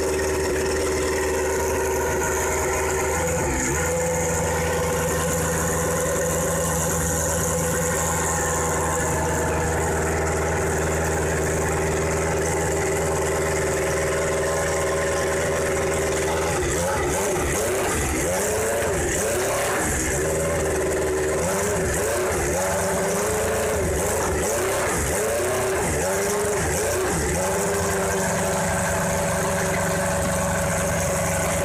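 Honda V10 engine of a 2002 Jordan EJ12 Formula One car idling steadily. Its revs dip briefly near the start and waver up and down over several seconds in the second half before settling again.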